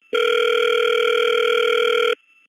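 Telephone line tone heard over a recorded phone call: one steady tone, about two seconds long, that cuts off suddenly.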